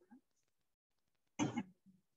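Quiet room, then a single short cough about one and a half seconds in.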